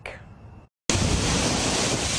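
Heavy storm rain and strong wind, a loud, steady rush of noise that starts abruptly a little under a second in, after a moment of dead silence.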